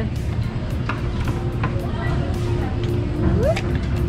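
Busy indoor room background: a steady low hum with one constant tone, scattered short clicks, and a brief rising voice near the end.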